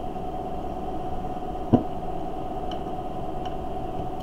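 Steady background hum in a small room, with a faint held tone, broken once by a single short click a little under two seconds in.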